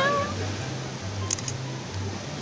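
A cat's single meow, wavering in pitch, ending just after the start, over background music with a low repeating bass line. A few short clicks follow a little over a second in.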